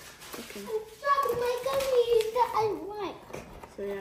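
A child's high voice, drawn out and wavering for a couple of seconds from about a second in, with no clear words. A few faint clicks come just before it.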